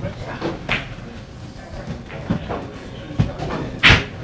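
A few separate sharp knocks and clacks, the loudest just before the end, with low voices in the room.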